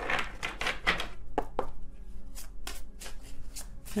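A deck of tarot cards being shuffled by hand: an irregular run of quick clicks and slaps of card against card.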